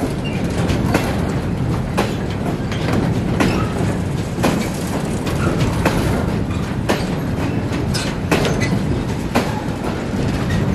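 Enclosed double-deck car-carrier wagons of a freight-style train rolling past slowly: a steady rumble of steel wheels on rail, with sharp clickety-clack strikes about once a second as the wheelsets cross rail joints.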